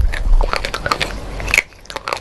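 Crunchy biting and chewing of brittle white sticks, a quick run of sharp crunches and crackles that dies down briefly near the end.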